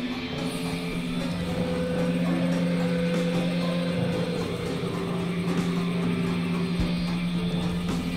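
Experimental electronic synthesizer drone music: sustained low synth tones under a grainy, clicking noise texture, with a higher wavering tone that drifts downward about halfway through.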